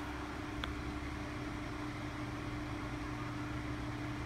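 Steady low background hum with a faint held tone, and one light click a little over half a second in.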